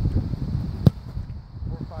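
A single sharp thud about a second in, a ball being kicked, over wind on the microphone.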